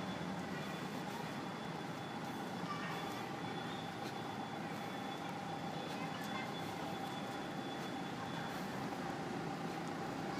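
Steady outdoor hum of a vehicle engine running in the background, with a faint steady tone above it.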